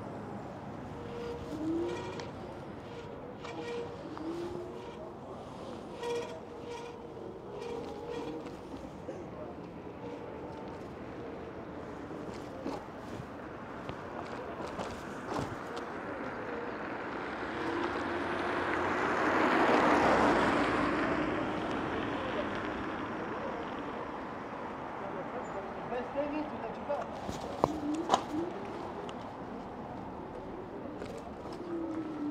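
Street noise heard from a moving e-bike, with a steady rush of wind and road noise. A vehicle passes, building up and fading away around two-thirds of the way through, and a few sharp knocks come near the end.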